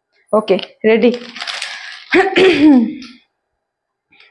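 Crinkling and rustling of a plastic Maggi instant-noodle packet being handled, with fine clicks for about a second, among short bits of a woman's voice.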